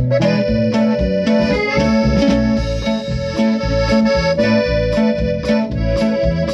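Norteño band playing an instrumental passage: accordion melody over string accompaniment, bass and drum kit, in a steady two-beat rhythm with drum strokes about twice a second.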